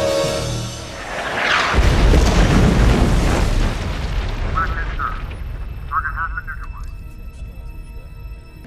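A large explosion from an ordered military strike: a sudden deep boom about two seconds in that rumbles and dies away slowly over several seconds, following dramatic music.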